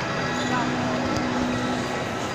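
Indoor shopping-mall ambience: a steady drone with a low hum and the murmur of distant voices.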